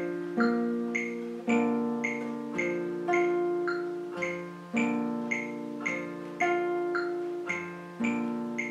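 Nylon-string classical guitar with a capo, fingerpicked in slow, even arpeggios of about two notes a second, the bass notes ringing on under the higher ones. A metronome clicks with each note, marking the eighth notes.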